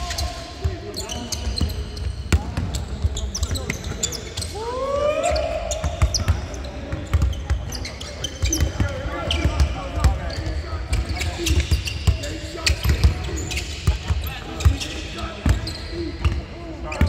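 Several basketballs bouncing on a hardwood court at irregular intervals, with short sneaker squeaks and one longer rising squeak about four and a half seconds in, echoing in a large arena. Indistinct voices are heard under it.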